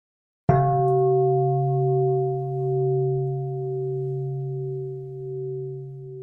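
A large singing bowl struck once about half a second in, ringing with several steady tones that waver slowly as they fade.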